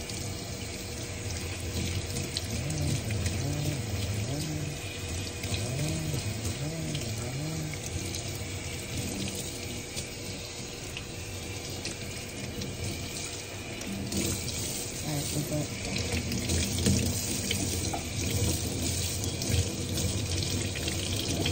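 Water running from a kitchen faucet's pull-down sprayer, splashing over a child's hair and into the sink as it is rinsed. The rush gets louder and brighter about two-thirds of the way through.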